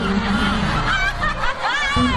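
A group of people laughing and snickering, with a high laugh that rises and falls near the end.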